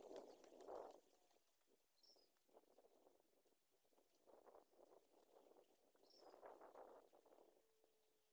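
Near silence, with faint rustling of ferns and soil in three short patches as hands work the ground to plant a seedling, and a few faint high chirps.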